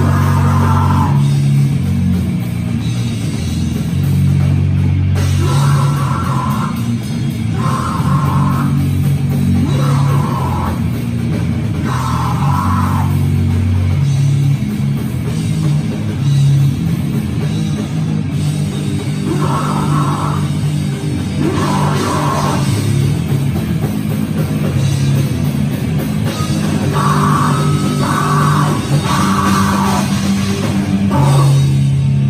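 Live heavy rock band playing loud: electric guitar, bass guitar and drum kit, with a higher part that recurs about every two seconds over a dense low end.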